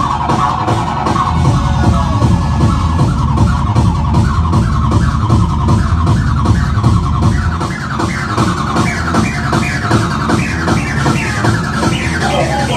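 Electronic dance music, acid techno, with a fast steady kick-drum beat. About halfway in, a repeating synth figure of short upward-bending notes comes to the fore and climbs higher toward the end.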